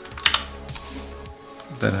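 Typing on a computer keyboard: a few quick keystrokes in the first second, entering a line of a program at a terminal.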